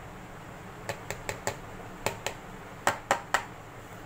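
A plastic measuring cup tapped against a plastic mixing bowl to knock out the last of the powdered sugar, making a string of about nine sharp clicks, some in quick pairs and threes. A low steady hum runs underneath.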